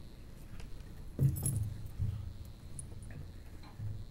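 Handling noise at the podium microphone: a short rustle and metallic clink about a second in, followed by a few low bumps.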